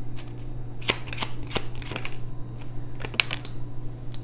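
Tarot cards being shuffled and handled, with a few crisp snaps of card about a second in and again near three seconds, over a steady low hum.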